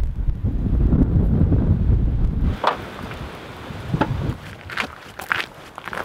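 Wind buffeting the microphone as a loud low rumble, easing off about two and a half seconds in; after that, a few scattered sharp clicks or steps.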